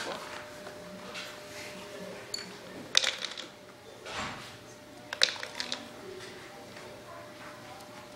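Handling noises on a homemade plywood dog feeder: a few sharp knocks and clatters, one about three seconds in and a quick cluster just after five seconds.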